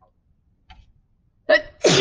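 A woman sneezing: a short, sharp first burst about one and a half seconds in, then the loud sneeze itself near the end.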